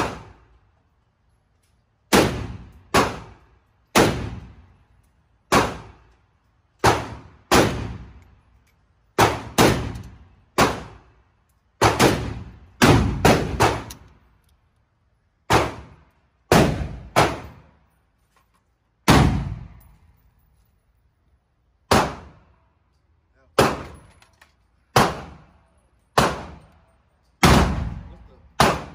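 AK-pattern rifle fired in single shots, about twenty of them at an uneven pace roughly a second apart, with a few quick doubles and triples. Each report rings out briefly in the reverberant indoor range.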